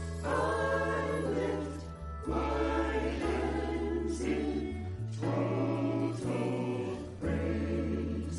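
Mixed choir of men and women singing a gospel song in phrases that swell and break off every two seconds or so, over held low bass notes that shift pitch a few times.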